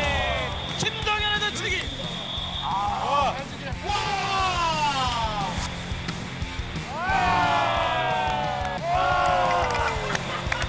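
Excited shouts and laughter from onlookers, with long drawn-out cries that fall in pitch, over steady background music.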